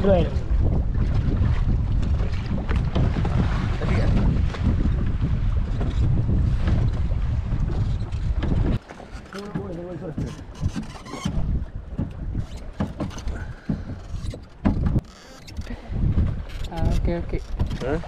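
Small motor fishing boat at sea: a steady low rumble with wind on the microphone for about the first nine seconds. It then drops off suddenly to quieter scattered knocks and brief voices.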